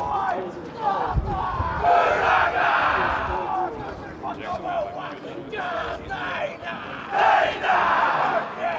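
A rugby team performing a haka: a group of young male voices shouting a chant in unison, in loud repeated phrases.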